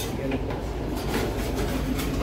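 Steady low rumble of restaurant background noise, with a light metallic click as the lid of a buffet chafing dish is lowered shut.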